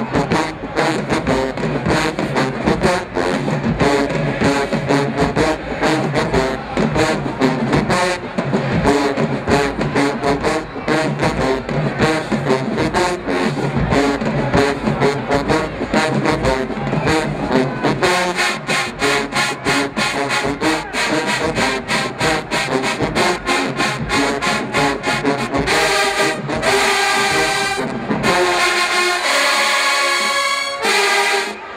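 Large HBCU marching band with sousaphones, brass and drums playing a tune from the stands. The rhythm settles into a more even beat partway through, and the brass turns brighter and fuller a few seconds before the end.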